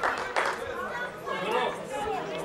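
Football spectators in the stands talking among themselves, several voices overlapping, with a couple of sharp claps in the first half-second.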